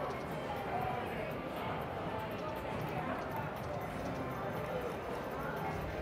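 Slot machine playing one bonus-round spin, with a few faint short tones over the steady hum and distant chatter of a casino floor.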